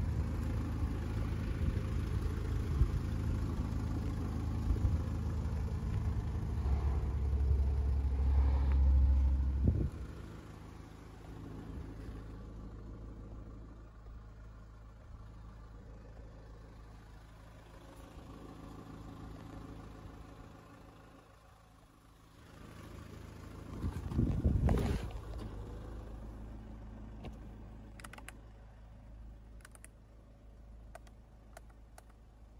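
Ford Mondeo Mk4's 2.0 TDCi four-cylinder diesel engine idling steadily. It is loud for the first ten seconds and much quieter after that, with a brief loud knock or handling noise about 25 seconds in and a few light clicks near the end.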